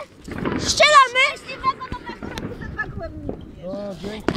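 Mostly people's voices: a short high-pitched exclamation about a second in and more brief speech near the end, with a few faint scattered clicks in between.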